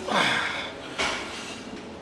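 A man straining under a barbell on a bench press: a groan of effort falling in pitch at the start, then a sharp metallic clank about a second in.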